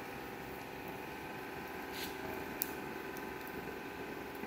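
Oxy-acetylene welding torch flame hissing steadily as it melts the joint and the filler rod into a liquid weld pool, with a couple of short sharp pops a little past halfway.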